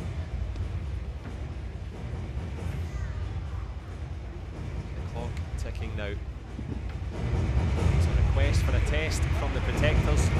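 Indoor sports-arena ambience: a steady low rumble with indistinct voices and music over the loudspeakers, growing louder about seven seconds in.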